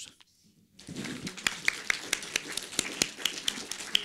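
Audience applauding, a dense patter of many hands clapping that starts about a second in.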